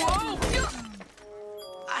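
Ceramic bottles and a plate crashing down and shattering in the first second, followed by a held musical chord.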